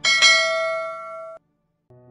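A single bell ding sound effect for an animated subscribe-button notification bell: one bright strike that rings and fades, then cuts off abruptly about one and a half seconds in.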